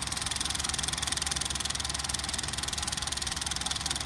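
Film projector clatter sound effect: a rapid, even mechanical rattle that holds steady.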